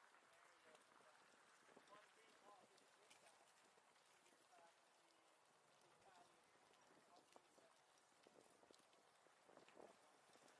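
Near silence: faint outdoor ambience, with a few faint voices.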